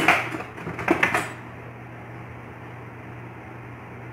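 A few clicks and clatters of a metal ladle being picked up and scooping a potato ball off a plate, in the first second or so, then only a steady low hum.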